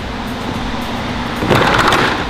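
Faint background music under a short, loud scraping rustle about one and a half seconds in, from the removed plastic front bumper cover and foam absorber being handled and carried.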